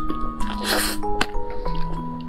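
Wet, squishy mouth sounds of eating soft cream-filled mille crêpe cake, with a few lip smacks, over background music playing a simple melody of held notes.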